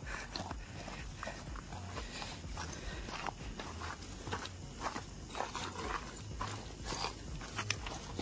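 Footsteps of several people walking on a loose, stony dirt trail: irregular steps, a few a second, with stones scuffing underfoot.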